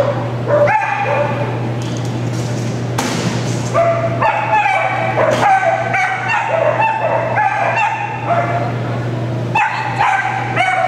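A dog barking in runs of short, high yips: a few about a second in, a dense string from about four to eight seconds in, and more near the end. A steady low hum runs underneath.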